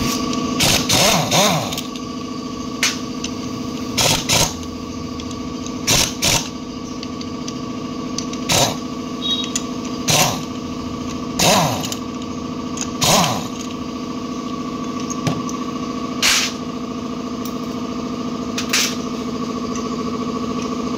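Impact wrench firing in short bursts, about fifteen of them at irregular intervals, loosening the clutch-side bolts on a Honda Wave S110 engine. A steady motor hum runs underneath.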